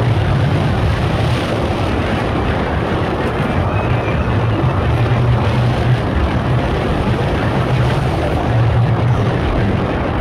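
Onboard sound of the Incredicoaster, a steel roller coaster train at speed: a steady rush of wind on the microphone over the rumble of the wheels on the track.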